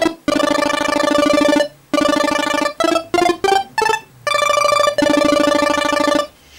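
Nord Stage 3 Compact synthesizer playing a chiptune-style pulse-wave sound. Its arpeggiator cycles very fast up and down, so each played note comes out as a rapid buzzing stutter. There are several held notes and a quick run of short notes, with brief gaps between them, and each note holds at full level with the decay set to sustain.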